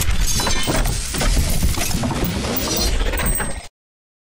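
Logo-reveal sound effect: a sudden loud crash into a dense, bright clatter over a deep rumble, which cuts off abruptly about three and a half seconds in.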